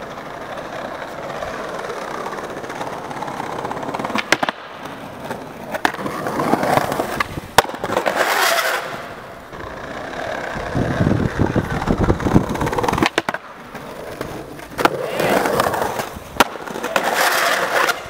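Skateboard wheels rolling over paving and road, the rumble swelling and fading as the board passes. Several sharp clacks of the board striking the ground break through it.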